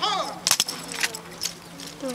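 Drill rifles being handled by a drill team: sharp slaps and clacks of hands and rifles, loudest about half a second in, with a few more after. A drawn-out voice trails off at the very start.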